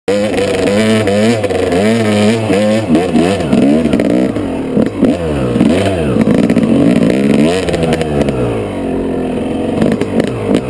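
Dirt bike engine revving up and down over and over as the rider works the throttle along a rough single-track trail, with a steady stretch at the start. Short knocks and clatter from the bike over the rocky ground come through between the revs.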